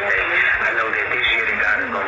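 Only speech: a woman talking continuously, her voice thin and band-limited as from a phone recording.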